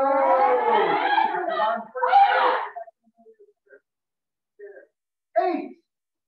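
Martial arts students' kiai shouts: one long drawn-out yell over the first two seconds, a shorter one about two seconds in, and a brief one near the end.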